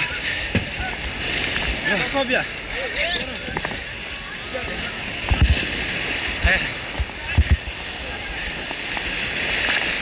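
Surf breaking and water sloshing and splashing around an inflatable rubber dinghy grounded at the shoreline, with people's voices calling out over it. A few heavy low thumps come about halfway through and again a couple of seconds later.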